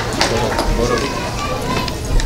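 Children's voices chattering and calling out in an audience, with no single clear speaker.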